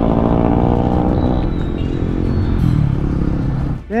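Motorcycle engine running at low speed, its pitch slowly falling as the bike slows down; it cuts off suddenly near the end.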